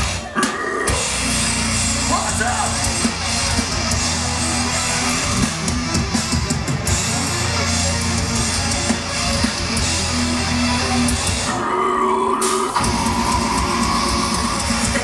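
Live heavy metal band playing loud with distorted electric guitars and a drum kit, heard from inside the crowd. The low end drops out for about a second near the end, leaving the guitars alone.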